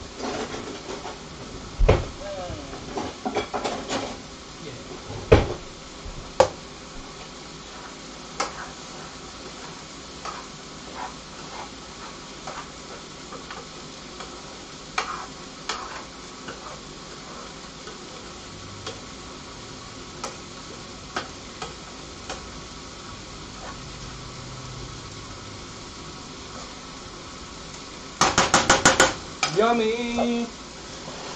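Diced vegetables sizzling in a frying pan while being stirred with a spoon, with scattered knocks of utensils against the pan. A quick run of rapid rattling clicks comes near the end.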